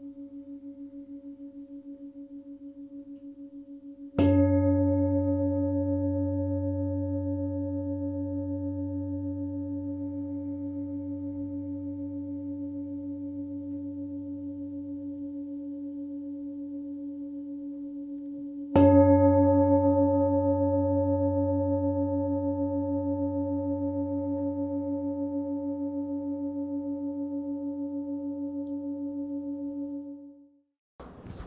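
Large hand-hammered metal singing bowls struck with a mallet, twice, about fifteen seconds apart. Each strike rings on as a sustained tone of several pitches that slowly fades with a wavering pulse.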